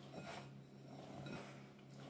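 Faint, soft rustling of fingertips rubbing butter into wholemeal flour in a glass mixing bowl, with a low steady hum underneath.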